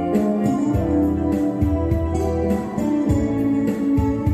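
Two electric guitars playing a slow ballad melody live, over a steady drum beat and sustained keyboard-like chords.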